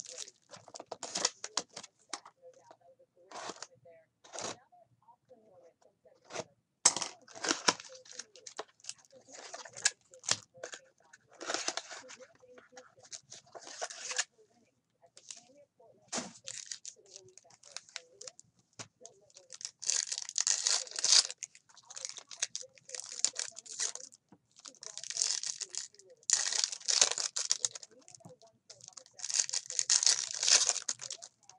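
Foil trading-card pack wrappers being torn open and crinkled by hand. The tearing and rustling come in irregular bursts, the longest and loudest about twenty and twenty-six seconds in.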